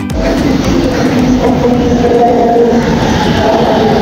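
Kelana Jaya line LRT train pulling into an elevated station platform. It makes a loud, steady rumble with a held whining hum throughout.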